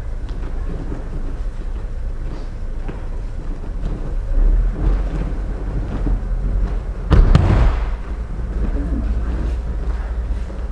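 A person thrown in an aikido kokyunage lands in a breakfall on a wrestling mat: one heavy thud about seven seconds in, with a brief rustle, over a steady low rumble.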